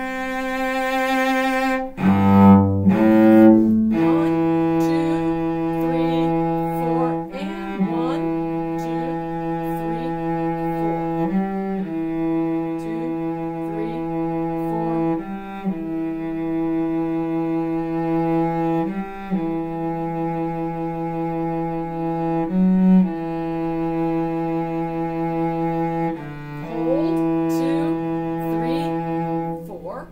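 Solo cello playing slowly: a few short bowed notes about two seconds in, then long held notes of about three to four seconds each, with a bow change between each.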